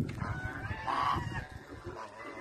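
Domestic geese honking, two calls about half a second apart.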